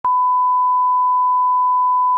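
Broadcast line-up test tone: the standard 1 kHz reference tone that accompanies SMPTE colour bars. It is a single steady, unbroken pitch, cutting in with a click at the very start.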